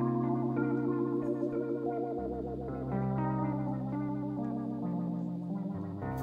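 Rock band playing: an electric guitar line through effects over sustained bass notes, the bass changing note about two seconds in and again near the end.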